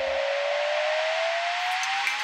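Rising whoosh sound effect of a TV news weather-segment intro: a steady hiss with one tone gliding slowly upward in pitch, building toward the intro music.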